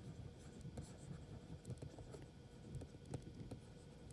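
Faint stylus strokes and light ticks of a pen on a writing tablet as handwriting is added to the screen.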